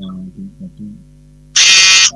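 A loud, harsh electronic buzz lasting about half a second near the end, over a steady low hum.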